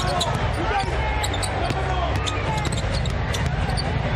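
Basketball being dribbled on a hardwood court, sharp bounces over a steady low arena background.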